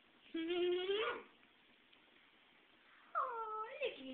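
A baby making two short, whiny fussing sounds. The first rises in pitch and lasts about a second; the second, near the end, dips and then rises.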